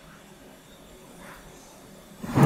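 Quiet room tone with faint, soft handling noise as a multimeter test probe is moved over a circuit board.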